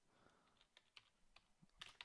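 Faint computer keyboard typing: a quick run of soft key clicks.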